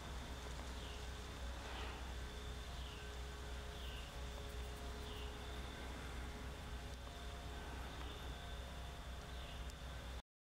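Outdoor ambience: a steady low rumble with a faint, steady high hum, and a short high chirp that falls in pitch, repeated about once a second.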